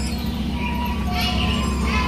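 Steady low hum aboard the ride's tour boat, with faint music of a few short held notes over it.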